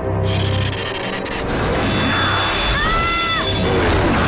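Cartoon action-scene background music with a steady pulsing low beat, over scraping and whooshing sound effects, with a short pitched swoosh near the end.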